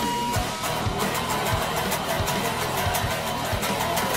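Electric guitar riff played over a backing track with a steady drum beat.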